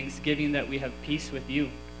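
Steady mains hum with a man's voice speaking faintly and quietly underneath it.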